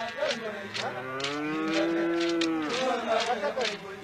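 A long, low blast on a curved horn trumpet, its pitch swelling up and sagging off over nearly two seconds and starting again at the very end. Under it, sharp knocks or beats come evenly, about three a second.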